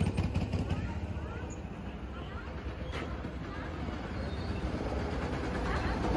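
Go-karts running around the track, heard as a steady low rumble that dips and then builds again toward the end, with a single click about halfway.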